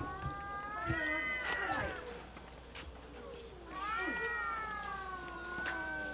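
Several cats meowing at once in long, drawn-out overlapping calls: one group about a second in and a longer one from about four seconds in. They are hungry colony cats calling for food at their feeding spot.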